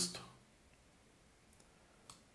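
A spoken word trails off, then near silence with a faint click from a computer mouse about one and a half seconds in.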